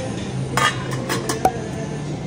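Stainless steel pot lid being lifted off a steel pot, clinking metal on metal: a quick cluster of clinks about half a second in, then one sharp, ringing clink near a second and a half.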